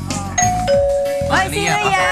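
Two-note doorbell chime, a ding-dong: a higher note, then a lower note held for about a second.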